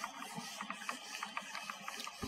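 A marker writing on a whiteboard: a faint run of short, irregular squeaks and ticks.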